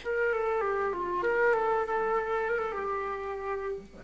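Concert flute playing a short melody of clean held notes, stepping up and down in pitch, ending on a longer lower note that stops just before the end.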